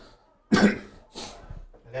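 A man coughs about half a second in, with a second, breathier burst a moment later.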